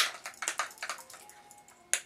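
Light clicks and taps of aerosol spray cans being handled. A quick irregular run in the first second thins out, with one sharp click near the end.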